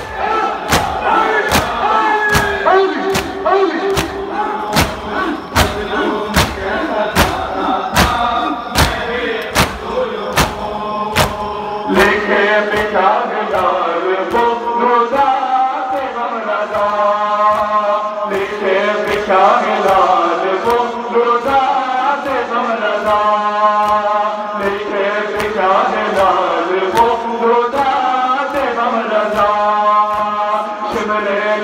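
A group of men chanting a nauha, an Urdu lament, in chorus, with matam: mourners striking their chests with their hands in a steady beat of about two strikes a second. The strikes thin out after about twelve seconds while the chanting carries on.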